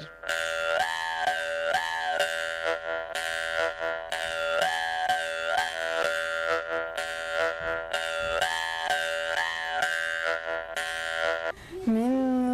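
Khomus, the Yakut metal jaw harp, played with rapid rhythmic plucking: a steady buzzing drone with a melody of overtones rising and falling above it, the phrase repeating about every four seconds. The playing stops shortly before the end.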